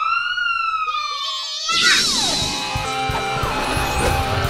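A toy police siren gives one long wail that rises and then slowly falls, stopping about two seconds in. Music then comes in with a whooshing swell.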